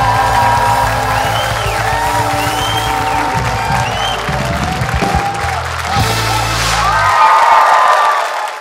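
Live band music with held bass notes, under audience applause and cheering; the low notes stop about seven seconds in.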